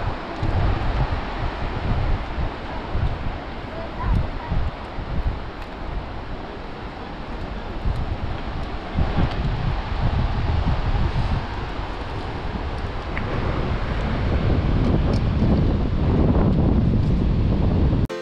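Wind buffeting the microphone in uneven gusts over a steady wash of surf.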